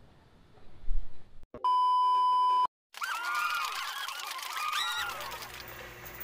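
An edited-in beep: one steady high tone lasting about a second, after a low thump. After a short dropout it gives way to a busy run of sliding, warbling pitched tones, like comic sound effects from a TV clip.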